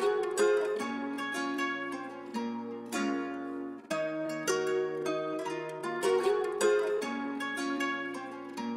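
Instrumental lo-fi drill beat: a melody of short plucked-string notes, harp-like, each note starting sharply and fading.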